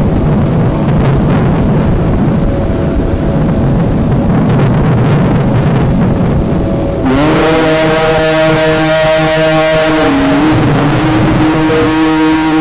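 Noisy background, then about seven seconds in a man's voice starts a long held chanted note in mujawwad Quran recitation style, steady in pitch with a brief waver partway through.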